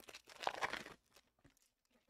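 Trading-card pack wrappers crinkling briefly in the first second, with a few faint ticks after.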